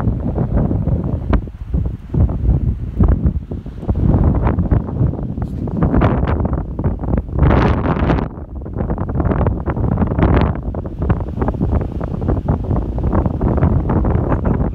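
Strong, gusty wind buffeting the microphone, rising and falling in loud gusts. A 20–25 mph crosswind is blowing.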